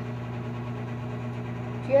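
A steady low hum that holds one even level throughout.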